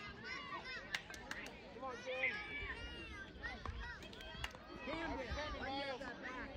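Several distant voices of spectators and children talking and calling out across a youth baseball field, overlapping with one another, with a couple of sharp clicks.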